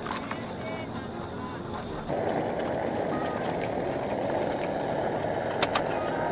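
Portable cassette-gas canister stove: a click at the start, then about two seconds in the burner catches and runs with a steady hissing rush of gas flame.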